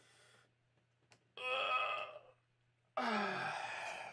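A man's voice making two wordless sighs: a short pitched one about a second and a half in, then a longer, breathier sigh near the end whose pitch falls.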